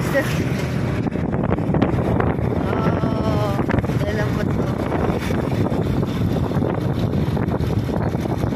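Steady rush of wind buffeting the microphone while riding along in a moving vehicle, with the vehicle's running noise underneath.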